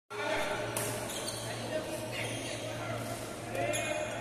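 Badminton rally on an indoor court: sharp strikes about every second and a half, over players' voices and a steady low hum.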